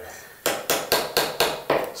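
A marking pencil drawn across coving in six quick, even strokes, about four a second, scratching a line where the saw cut will go.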